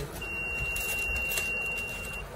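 Electronic beep from a digital particle filling machine: one steady high tone lasting about two seconds, with a few faint clicks during it.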